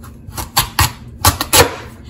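A chef's knife forcing its way through the hard rind of an acorn squash, with about four sharp cracking crunches as the blade splits it.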